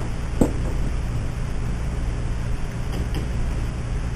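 Steady low hum and hiss of a meeting room's background noise during a pause in talk, with one short knock about half a second in.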